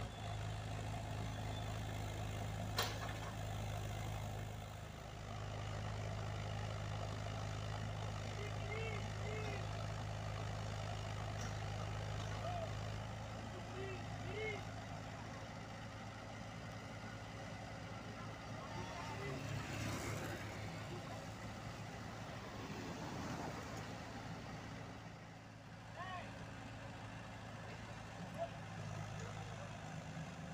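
The engines of a Komatsu PC78UU mini excavator and an Isuzu dump truck running together in a steady low hum while the excavator digs and loads dirt. A sharp knock comes about three seconds in.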